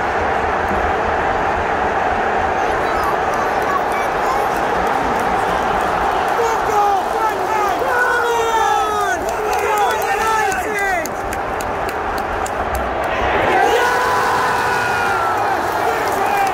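A large football stadium crowd, thousands of voices shouting and singing together, rising to a louder cheer near the end.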